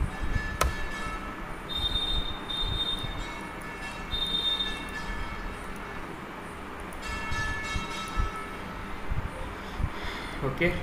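Steady background hum and hiss with a low rumble and faint high whining tones that come and go, plus a single sharp click just after the start.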